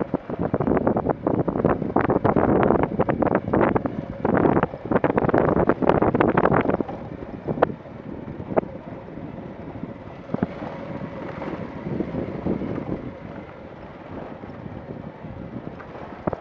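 Wind buffeting the microphone while moving along a rough dirt road. It is loud and gusty for about the first seven seconds, then drops to a lower, steadier rush with a couple of sharp knocks.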